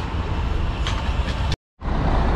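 Steady low rumble of street traffic, with no clear events. It drops out to dead silence for a split second about one and a half seconds in, then resumes.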